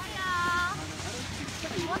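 A high-pitched voice calls out for about half a second, and another call starts near the end, over the steady background noise of a busy ski slope.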